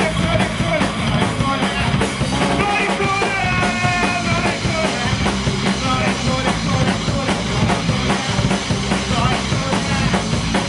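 Live punk rock band playing loudly: drum kit and electric guitar, with one long held note from about three to four seconds in.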